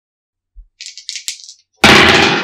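Intro sound effect: after a short silence, a brief shaker-like rattle for under a second, then a sudden loud burst near the end.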